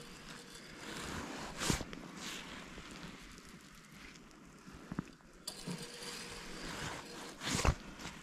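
Spinning reel on a short ice-fishing rod being wound in while a hooked fish bends the rod, with gear and ratchet-like mechanical noise and a few sharp clicks.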